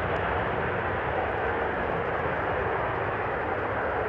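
Soko J-22 Orao attack jet's twin turbojet engines at takeoff power as it rolls and lifts off, a steady rushing noise with no distinct whine.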